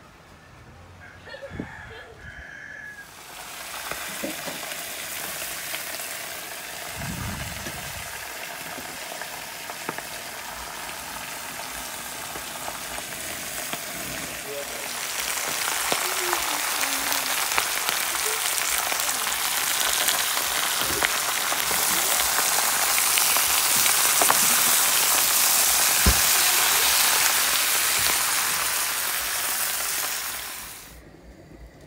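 Bok choy frying with garlic and onion in a hot pan, a steady sizzle that sets in about three seconds in and grows louder around the middle.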